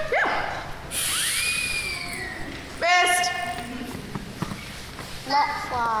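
A gliding whistle sound effect for a shot arrow's flight, rising quickly and then falling slowly over about a second and a half. About three seconds in comes a short, loud held vocal note, and a child's word comes near the end.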